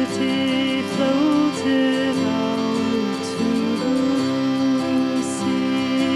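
Slow live band music: acoustic guitar with long held notes that slide from one pitch to another.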